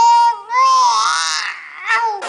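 Young baby crying in wails: a held cry breaks off about half a second in, then a second, breathier cry and a short one near the end.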